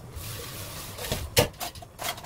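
Sharp click about halfway through, then several lighter clicks near the end, typical of metal tongs knocking against a frying pan while chili pepper leaves are turned in it for blanching. A soft hiss runs under the first half.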